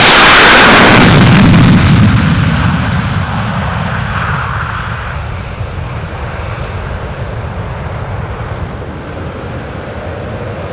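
Swiss F/A-18C Hornet's twin General Electric F404 turbofans in afterburner on a takeoff run, passing close by. The roar is loudest in the first two seconds, then fades as the jet climbs away and the high end falls off.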